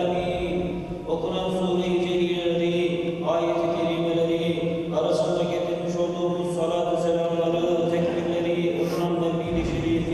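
A man's voice chanting an Arabic recitation into a microphone: a slow, melismatic melody of long held notes that shift in phrases every second or two.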